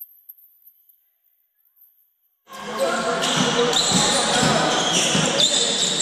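Near silence for about the first two and a half seconds, then the sound of an indoor basketball game cuts in suddenly: a basketball bouncing on the hardwood court, a few short sneaker squeaks and players' voices echoing in the hall.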